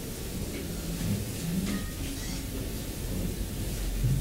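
Low, steady room rumble with faint, indistinct murmuring voices and a few small clicks.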